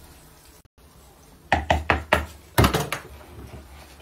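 A quick run of sharp kitchen knocks at a countertop where batter is being worked in a plastic bowl: about five in quick succession about one and a half seconds in, then three more half a second later.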